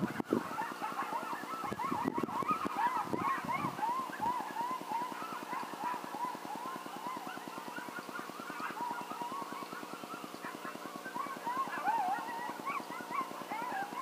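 A group of coyotes yipping and howling, many short rising-and-falling yips overlapping through the whole stretch. Underneath runs a steady low hum, with a few low bumps in the first four seconds.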